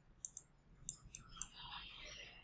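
Stylus tapping on a tablet screen while handwriting: about half a dozen faint, short clicks spread irregularly through the first second and a half, followed by a soft, faint noise near the end.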